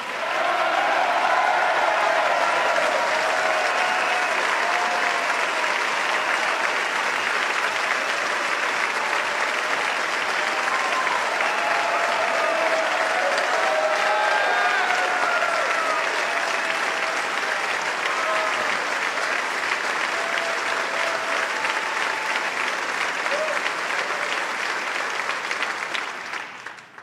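Sustained applause from a large crowd, with scattered voices and cheers over it. It starts at once, holds steady, and dies away near the end.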